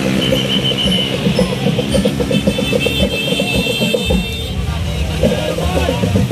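Din of a street parade: crowd noise over a steady low drone with a pulsing beat, and a high shrill toot near the start, then a longer one lasting about two seconds.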